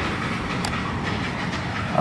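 Steady, unbroken background noise with no pauses or change in level, and one faint click about two-thirds of a second in.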